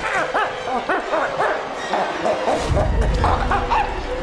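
A monster's vocal sound effect: a rapid string of short yelping cries, each rising and falling in pitch, with a low rumble about two-thirds of the way in.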